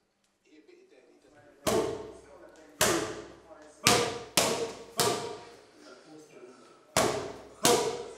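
Boxing gloves striking hand-held punch pads, seven sharp smacks in short combinations, each echoing briefly off the room's walls.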